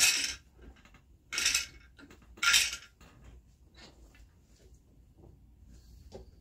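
A small weaving shuttle being pushed through the shed of a floor loom, giving three short scraping slides across the warp threads about a second apart, then quiet handling.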